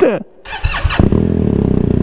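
BMW R 1250 GS's boxer twin engine being started: a brief start-up that catches about a second in and settles into a loud, steady idle.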